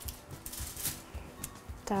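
Aluminium foil crinkling and rustling in short bursts as gloved hands press minced meat flat on it, over faint background music.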